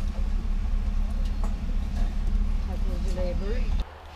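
Car engine idling, heard from inside the cabin as a steady low rumble, with faint voices about three seconds in. The rumble cuts off suddenly near the end.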